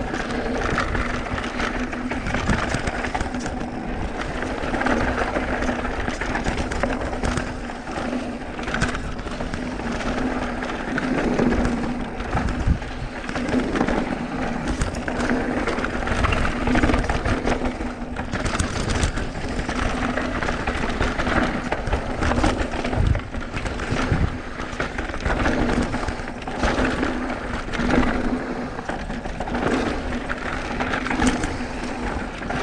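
Mountain bike descending a rough dirt singletrack: tyres running over dirt and rocks with frequent knocks and rattles from the bike over bumps, and a steady low buzz underneath.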